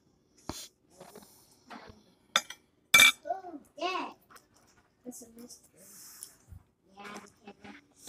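Fork and fingers clinking against a glass plate in a few sharp taps, the loudest about three seconds in with a short ring. Brief wordless vocal sounds follow it.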